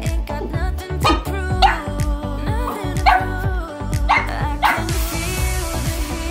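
A dog barking in several short, sharp yips over background music.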